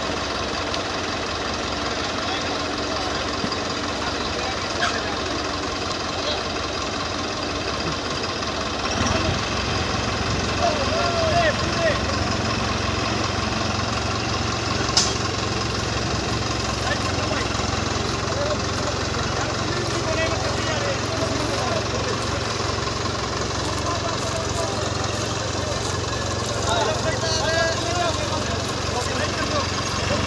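Diesel tractor engines of a New Holland 5620 and a Sonalika 750 running steadily. Their low drone grows stronger about nine seconds in, with people's voices talking over it.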